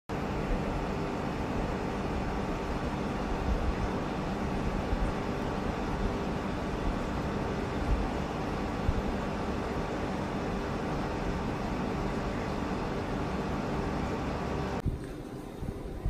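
Steady hum and rushing noise of aquarium equipment, with pumps and circulating water and faint steady tones underneath. It cuts off suddenly about a second before the end.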